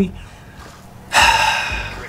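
A man's loud, sharp breath in, lasting just under a second, starting about a second in after a short pause in his talk.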